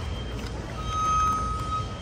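Store background: a steady low hum, with a steady high electronic tone, like a long beep, sounding for about a second in the second half.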